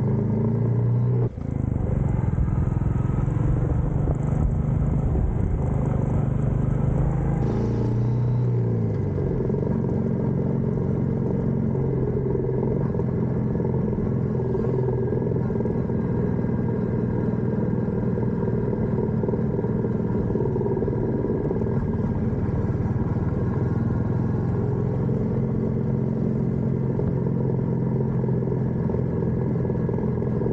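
Motorcycle engine running steadily while riding at a cruising pace. The engine note drops briefly around eight seconds in.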